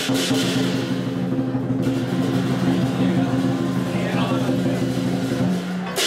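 Lion dance drum played in a continuous roll, with cymbals ringing over it for about the first two seconds.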